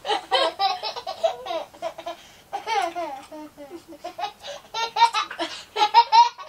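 A toddler laughing in a string of short, high-pitched laughs while being played with.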